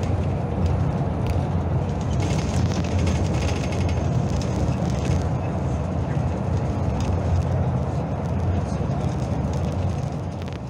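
Steady low engine and road rumble inside a moving vehicle travelling at road speed.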